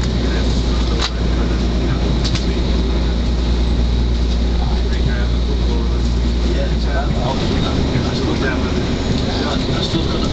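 Class 185 diesel multiple unit heard from inside the carriage while under way: a steady low engine drone over wheel and track rumble, with a sharp click about a second in. About seven seconds in, the low drone drops away and the running noise carries on.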